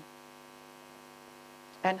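Steady electrical mains hum, a stack of even unchanging tones, heard plainly in a pause between words; a woman's voice starts again near the end.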